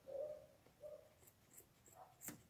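Near silence: small scissors snipping crochet thread with a few faint light snips near the end, under soft short low tones in the background.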